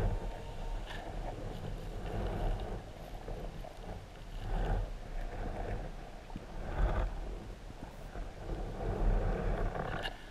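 Muffled underwater rumble and swishing as a plastic sand scoop is shaken on the sea floor, sifting sand and shells, swelling every couple of seconds.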